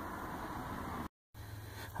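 Faint steady background hiss with no distinct event, broken about a second in by a brief gap of dead silence where the recording is cut.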